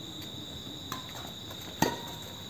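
Crickets giving a steady high-pitched trill, broken near the end by a sharp crack of a badminton racket hitting the shuttlecock.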